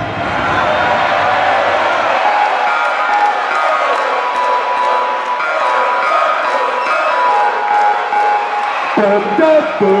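Loud electronic dance music played live over a PA, in a breakdown: the bass drops out about two seconds in, leaving held synth chords over a cheering crowd. A new choppy synth riff starts near the end.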